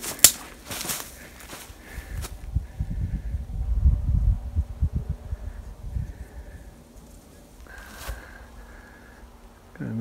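Dry grass and brush crackling and rustling against legs and clothing as someone walks through it, with footsteps. Sharp crackles come in the first second, then a low rumble of wind or handling on the microphone rises in the middle and fades.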